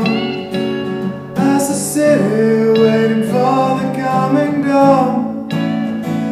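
Acoustic guitar playing with a man's singing voice holding and bending notes between the lyric lines of a slow song.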